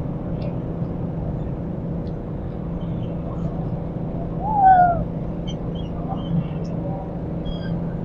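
Steady low rumble of city traffic, with one short falling bird call about halfway through and a few faint high chirps after it.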